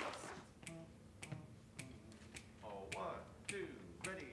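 A count-off in a hushed hall: sharp clicks at a steady pace, a little under two a second, setting the tempo just before the band comes in. A short voice sound comes near the middle.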